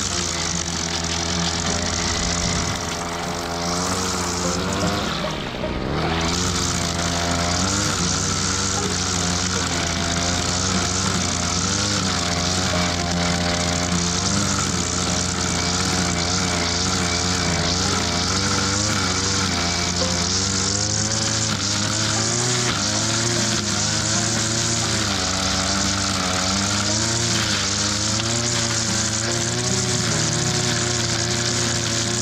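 Small two-stroke brush cutter engine running, its speed rising and falling a little with the throttle, over a steady hiss.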